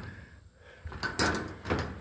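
Stainless steel sliding barrel-bolt latch on a metal shed's doors being worked by hand: a few sharp metallic clicks and knocks starting about a second in, as the doors are unlatched.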